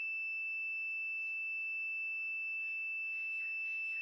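Small electronic buzzer sounding one steady, unbroken high-pitched tone: the soil-moisture alarm, on because the moisture reading is below the set threshold.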